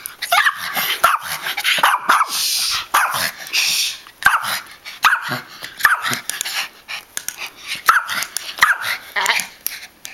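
A rat terrier barking repeatedly in short, high-pitched barks and yips, worked up while chasing a toy. There is a steady rushing noise for a couple of seconds, starting about two seconds in, and scattered light clicks.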